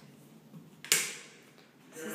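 A single sharp click or knock about a second in, fading quickly, with a fainter tick just before it, against quiet room tone.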